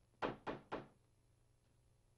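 Three quick knocks on a wooden door, about a quarter second apart.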